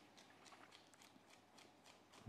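Faint, quick taps of a chef's knife slicing a red chilli into fine strips on a wooden chopping board, about five cuts a second.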